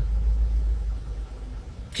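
A low rumble that fades away over the first second and a half.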